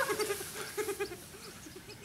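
A voice making a run of short, quick cries that fade out over about a second and a half, then faint outdoor background.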